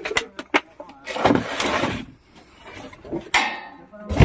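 A metal snake hook probing a woodpile: a few sharp knocks in the first half-second as it strikes the loose wooden planks, then scraping and rattling among the boards and sheet metal.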